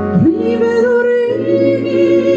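A woman singing live into a microphone: her voice swoops up into a long held note, over sustained piano and keyboard accompaniment.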